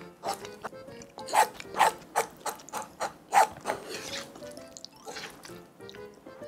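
Eating sounds from a meal of fried rice in a nonstick frying pan: a run of quick clicks and scrapes, about two to three a second, thinning out in the second half, as a wooden spoon works the pan and food is chewed. Soft background music runs underneath.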